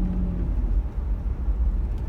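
Car driving along, heard from inside the cabin: a steady low rumble of engine and road noise, with a steady hum that fades about half a second in.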